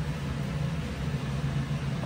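Steady low hum of a kitchen range hood (chimney) fan running over the stove.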